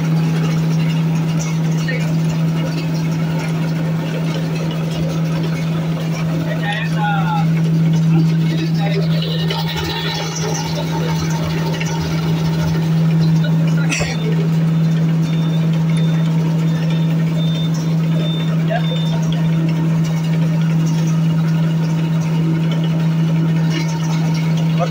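Coconut husk shredder running at a steady speed, its three-phase induction motor and belt-driven rotor giving a constant low hum while husk fibre is fed into the hopper. A single sharp click about halfway through.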